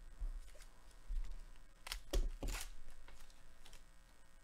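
Baseball trading cards handled by gloved hands: soft rustling and low thumps, with a few sharp clicks of card stock, three close together about two seconds in.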